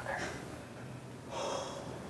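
A man breathing hard: a short breath just after the start, then a longer gasp about a second and a half in.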